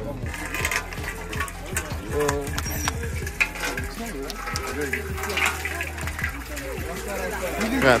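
Water from a hand-pumped borehole well pouring from the spout into a metal basin as the pump lever is worked, under people's voices.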